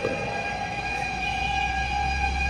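Fire truck siren held at one steady pitch, heard from a distance, with a low rumble growing in the second half.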